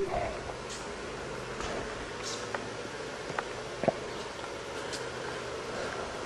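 Steady low room noise in a hangar, with a few faint ticks about midway.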